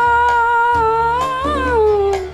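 A woman's voice holding one long sung note over a backing track with a low pulsing bass. The note stays level, lifts with a waver about three-quarters of the way through, then slides down at the end.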